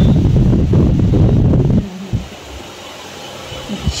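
Loud rustling and rubbing right on the microphone for about two seconds, as a German Shepherd's head and fur press against the phone. It then drops to a quiet background.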